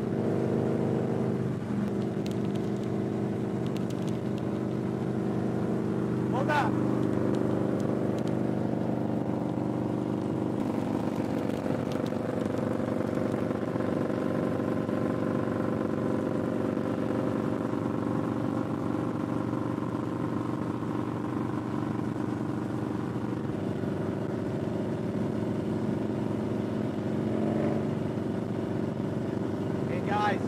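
Harley-Davidson touring motorcycle's V-twin engine running at a steady cruise on the highway. The engine note holds steady, then shifts once about a third of the way through.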